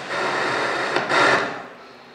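Handheld microphone being handled as it is passed over, giving loud rubbing and scraping noise that swells to its loudest about a second in and then drops away sharply.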